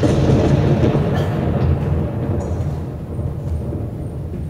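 A loud rumble that starts suddenly and slowly fades away.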